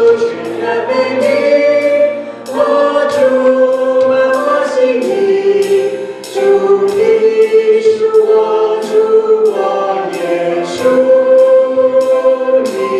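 Worship team singing a slow gospel song in harmony into microphones, with women's voices leading. It is backed by a band with a steady percussion beat about every 0.6 seconds.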